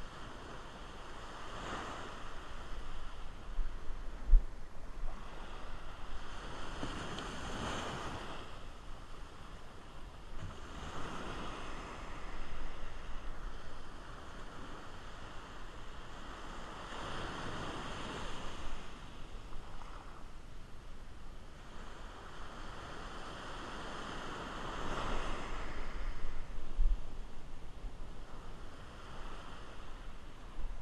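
Small surf breaking and washing up a sandy beach, swelling and fading every five or six seconds, with wind buffeting the microphone now and then.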